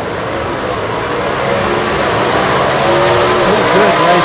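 Two gasser drag cars' engines at full throttle as they launch and accelerate down the strip, growing louder, with the engine pitch climbing near the end.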